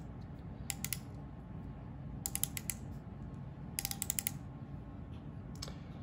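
Micrometer ratchet stop clicking in three short runs of quick clicks, a few clicks each, with a lone click near the end. This is the ratchet slipping once the spindle meets its stop, so it closes with the same measuring force each time.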